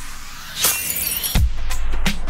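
Electronic music for a TV channel's logo ident. The beat drops out, a bright, glassy swell rises and falls about half a second in, and a deep bass hit lands just past the middle as the beat comes back.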